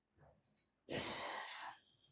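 A person sighing: one long, breathy exhale lasting about a second, starting near the middle.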